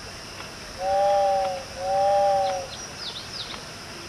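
A model sternwheeler's two-note whistle blowing two long blasts, each about a second long, one straight after the other.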